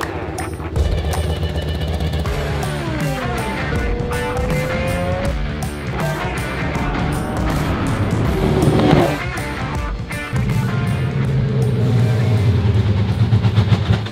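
Electronic music with a steady beat, mixed with the V10 engine of a multi-seat Formula 1 car revving, its pitch falling and then rising, with a loud swell near the middle.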